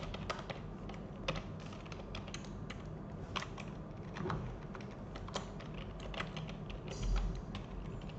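Typing on a computer keyboard: light, irregular key clicks.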